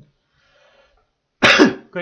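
A man gives one short, loud cough-like vocal burst about a second and a half in, after a near-silent pause.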